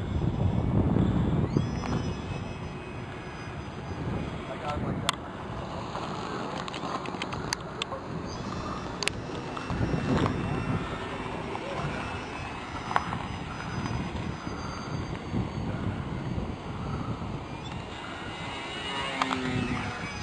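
Radio-controlled P-47 Thunderbolt model plane's engine and propeller droning as it flies overhead, the level swelling and dropping as it passes, with a few sharp clicks in the middle.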